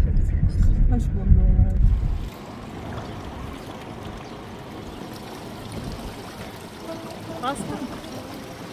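Low car cabin road rumble for about two seconds, then a sudden cut to a steady rush of river water around an inflatable raft.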